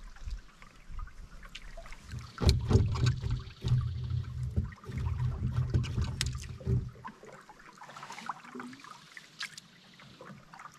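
Paddle strokes from an aluminum canoe: water swirling and dripping off the blade, with scattered knocks of the paddle and gear against the metal hull. A low rumble runs through the middle few seconds, then it goes quieter, with only light clicks and water near the end.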